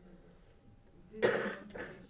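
A person coughing: one loud cough a little past a second in, followed quickly by a smaller second one.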